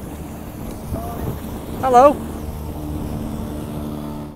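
Engine of a small motor cruiser passing close by on a canal: a steady low drone with several held tones.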